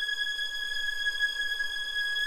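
Soundtrack music: a single high bowed-string note held steady, without a break.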